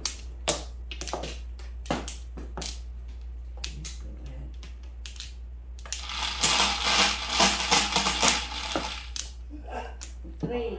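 Mahjong tiles clacking on a felt table: a few separate sharp clicks as tiles are drawn and set down. From about six seconds in comes some three seconds of rapid, dense clattering as many tiles are knocked and shifted together.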